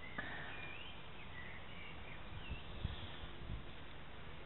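Outdoor ambience: a steady background hiss with a few short, faint bird chirps in the first three seconds, and a few low thumps on the microphone around the middle.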